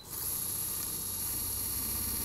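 Dental implant surgical handpiece running a 2.0 mm pilot drill into the bone of the implant bed: a steady high-pitched whine that cuts in abruptly at the start and holds at an even pitch and level.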